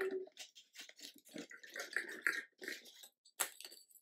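Small red Christmas ornament balls shifting and knocking inside a clear plastic tube as it is tipped and handled: an uneven run of light plastic clicks and rustles, with one sharper knock near the end.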